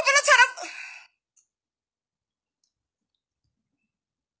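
A woman's voice, loud and high-pitched, for about the first second, then it cuts off to dead silence.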